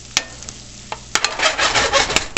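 Chopped bacon and onions sizzling in a frying pan, with a single click a fraction of a second in. From about a second in, a metal spoon stirs and scrapes through them, louder, with clicks against the pan.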